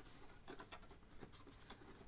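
Faint scratching and small clicks of fingers handling the metal-shielded module on a circuit board, feeling whether it lifts out.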